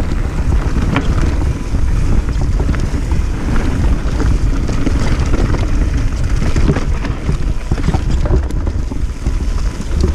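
Wind buffeting the action camera's microphone over the rumble of mountain-bike tyres on a dirt trail during a fast descent, with scattered rattles and knocks from the bike on the rough ground.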